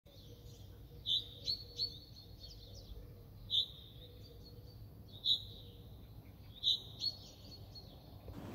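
Small birds chirping outdoors: short, high chirps every second or two, some in quick pairs, over a faint low background hum.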